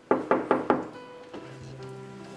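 Four quick knocks on a wooden door, about five a second, followed by soft held notes of background music.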